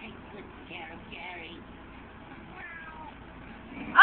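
Cartoon snail meowing like a cat, played from a video through computer speakers: faint meows about a second in, then a loud meow starting right at the end.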